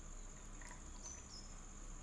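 Quiet background with a faint steady high-pitched whine, and two brief higher chirps about a second in.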